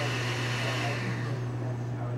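Steady low hum under a whirring machine noise that dies away about a second and a half in.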